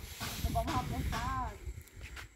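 Quiet, indistinct talking, with a breathy hiss near the start.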